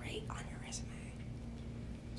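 Soft, breathy speech close to a whisper, with a few faint hissing consonants, over a steady low hum.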